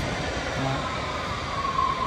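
Steady rumble of an underground train running through the station, with a high whine that comes in over the second half.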